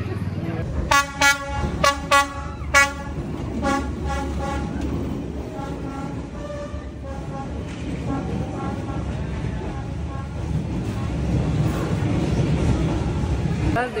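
A diesel passenger train's horn sounds about five short, loud toots, then fainter toots, while the train rolls past close by with a steady low rumble.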